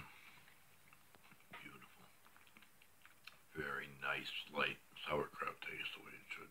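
Faint clicks of a fork against a plate and chewing, then from about three and a half seconds in a man's voice speaking indistinctly.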